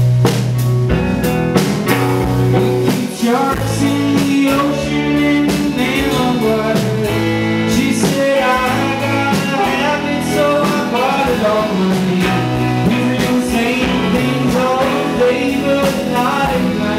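Live band playing, led by electric guitar, with a man singing; the voice comes in about three and a half seconds in and carries on over the instruments.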